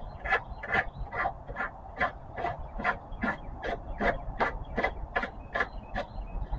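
Wooden dowel tip sanded back and forth on a sanding block, a short scratchy stroke about two or three times a second. This blunts the too-sharp point of a homemade tapestry needle.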